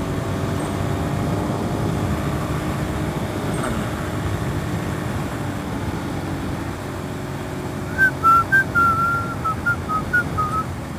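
Suzuki SV650S's V-twin engine running at a steady cruising speed with wind rush. About eight seconds in, a run of short whistled notes comes in loud over it.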